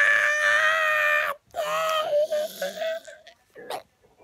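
A boy's strained, drawn-out mock choking noise, as if being choked out in play: one long held vocal tone, then after a short break a second, wavering one, and a brief burst near the end.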